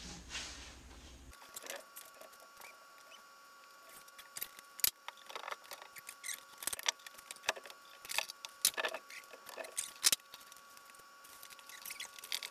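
Irregular sharp clicks and light rattling from the metal hooks and buckles of ratchet straps being handled and unhooked around a stone slab, thickest in the middle of the stretch and dying down near the end.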